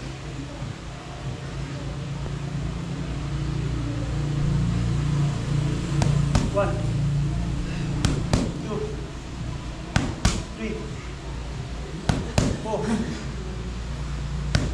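Boxing gloves smacking focus mitts during sit-up punches. After a stretch with only a steady low hum, the hits start about halfway in and come in quick left-right pairs, about one pair every two seconds.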